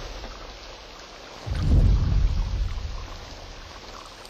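A deep rumble swells about one and a half seconds in and fades away over the next two seconds, over a low hiss.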